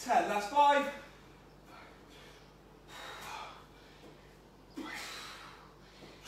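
A short voiced grunt of effort in the first second, then heavy breathing with a few breaths out, from a person working through a set of dumbbell exercises.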